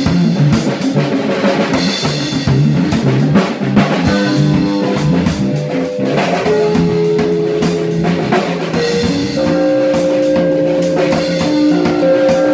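Live rock jam of a Gretsch drum kit, electric bass and electric guitar. The drums play busy fills for the first few seconds, then held guitar notes ring out over the beat from about four seconds in.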